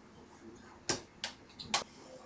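Three sharp clicks, about a second in and again near the end, from hands working the controls and wiring of a bench-top electrical test rig.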